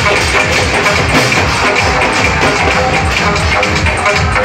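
A group of barrel drums (dhol) beaten with sticks, playing a loud, fast, steady rhythm.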